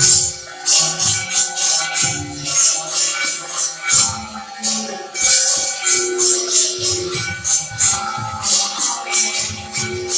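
Temple aarti music: metallic hand cymbals and bells clashing and jingling in a steady rhythm several times a second, over low drum beats and a few held ringing tones.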